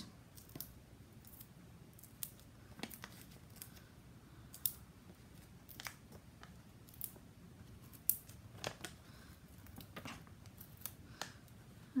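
Faint, irregular small clicks and crinkles of paper handled at close range: fingers peeling the backing paper off foam adhesive pads (dimensionals) and pressing a paper piece down.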